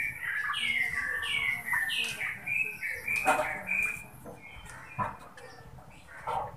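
A bird chirping: a quick series of short falling notes, two or three a second, that stops about four seconds in. A couple of dull knocks, about three and five seconds in, fit a wooden spatula striking the wok.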